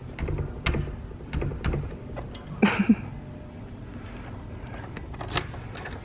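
Keys and an old wooden door's lock being worked: a series of scattered sharp clicks and clunks from the lock mechanism. About two and a half seconds in there is one short, louder sound.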